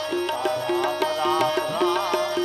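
Indian devotional music: tabla playing a steady rhythm under held drone notes and a wavering melody.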